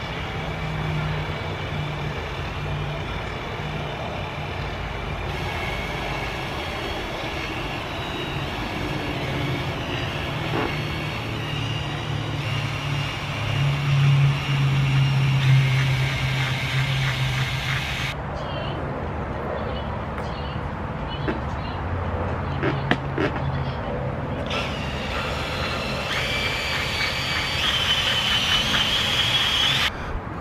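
Cordless drill running with a foam polishing pad, buffing polish onto a plastic headlight lens: a steady motor hum and whine that is loudest about halfway through. The pitch and level change abruptly a few times.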